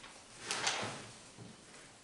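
Paper rustling as sheets of a document are handled and turned: two quick crisp rustles about half a second in, then a softer tail.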